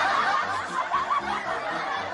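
People laughing, snickering and chuckling, loudest at the start and tapering off.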